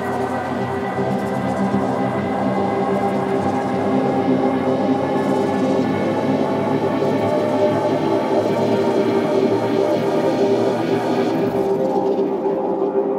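Ambient electronic music: a dense synthesizer drone of many held tones with a fast fluttering texture running through it, swelling slightly over the first few seconds.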